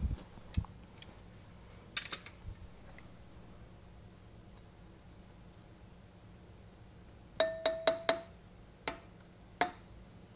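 Hammer taps on a steel pin punch, driving a dowel pin into an aluminum silencer monocore clamped in a vise. A couple of taps come about two seconds in, then a quick run of about six sharp, ringing metallic strikes near the end.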